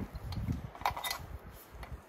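Low rumble of wind on the microphone, with a few light clicks from a rifle magazine being handled.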